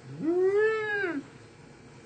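A single drawn-out meow-like call, about a second long, sliding up in pitch and then falling back.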